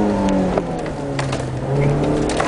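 Competition car's engine heard from inside the cabin, its revs dropping about half a second in as the driver lifts off, then running steadily at lower revs and starting to pick up again near the end.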